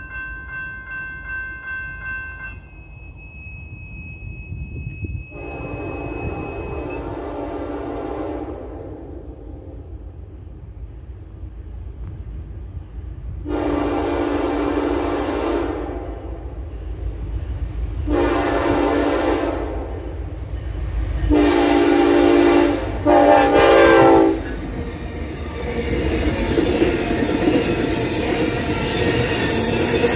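Grade-crossing warning bell ringing at first. Then a Norfolk Southern freight locomotive's air horn sounds a series of blasts for the crossing, the last two close together. Near the end the train rolls past with wheel rumble and clatter from the intermodal cars.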